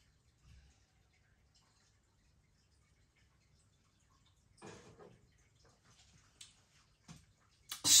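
A man drinking beer from a glass: mostly quiet, with faint sipping, then a short breathy sound about halfway through as the glass is set down, and a couple of small clicks near the end.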